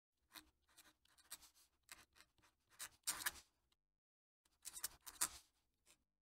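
Fountain pen nib scratching faintly across paper in a run of short strokes as a cursive signature is written. The strongest strokes come about three seconds in, then there is a brief pause before a few more strokes.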